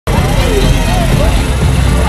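Engine of a small SUV running close by in a slow-moving parade, under a steady low rumble of street noise, with people's voices mixed in.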